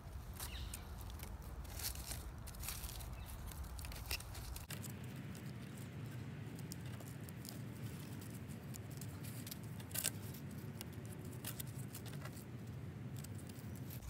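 Faint rustling and small scattered clicks of hands working a rope lashing around wooden poles, with dry leaves crackling under the kneeling worker.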